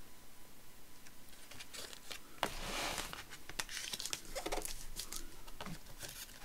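Paper and card being handled: rustling and light taps and clicks, with a longer rubbing, sliding rustle about two and a half seconds in.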